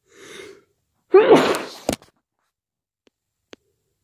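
A person with a cold sneezes once: a short breathy intake of breath, then one loud sneeze about a second in.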